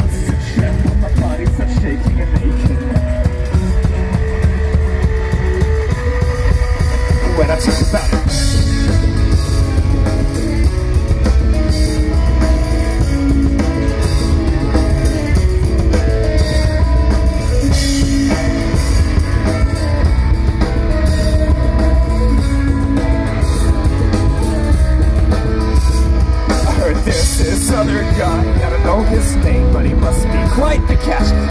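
A live rock band playing amplified: a drum kit, electric guitars and a singer on a microphone, at a steady high level throughout.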